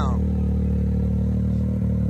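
Can-Am Maverick X3 race UTV engine idling steadily.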